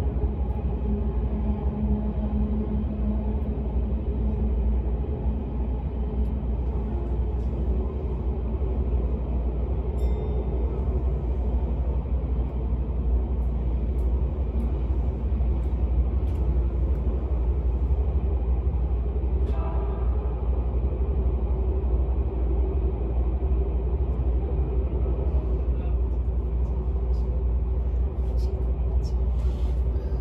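Odakyu 60000-series MSE express train running through a subway tunnel, heard from inside the passenger car: a steady, deep rumble of wheels on rail with a constant motor hum. A brief higher-pitched squeal comes about two-thirds of the way through.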